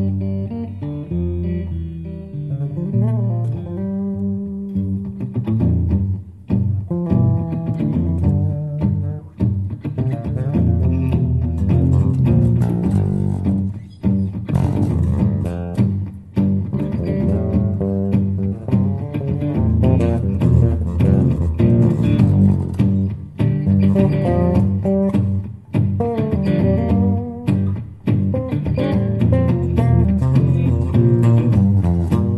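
Instrumental live passage of a Godin 5th Avenue Uptown GT LTD thinline archtop electric guitar, with TV Jones Classic pickups and a Bigsby tremolo, played with an electric bass. It opens on held notes, and the playing turns busy and rapidly picked from about six seconds in.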